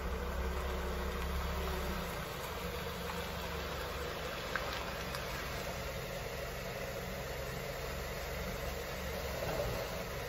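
Dodge Journey SUV's engine running as the SUV rolls slowly forward and stops, then idling steadily. The low engine note is a little stronger for the first two seconds.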